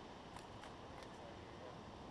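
Faint steady rushing background noise with a few soft clicks in the first second.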